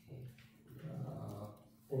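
A man's low, wordless voice: a short sound at the start, then a drawn-out hum or groan lasting about a second.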